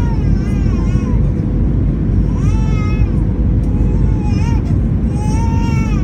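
Steady, loud cabin roar of an Airbus A320 in flight, with a steady hum in it, and a baby crying over it in several short, high-pitched wails.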